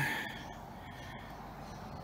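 Petrol lawn mower engine running steadily, heard faintly.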